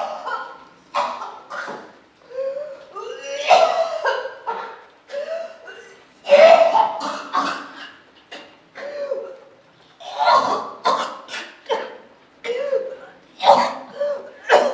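A woman retching and gagging over a toilet bowl, with strained, coughing heaves in irregular bursts about every second. She is ill with breast cancer.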